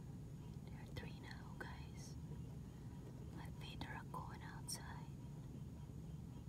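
A person whispering faintly in two short stretches, the second starting about three seconds in, over a low steady hum.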